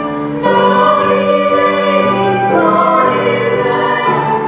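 Small mixed choir singing a Christmas carol with grand piano and flute accompaniment: long held chords, with a fresh phrase coming in about half a second in.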